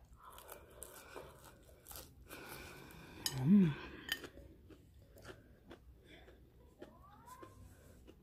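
Crunchy bites and chewing of breaded shrimp coated in crushed Cheetos, with sharp crackles that are densest in the first half. A brief hummed "mm" about three and a half seconds in is the loudest sound.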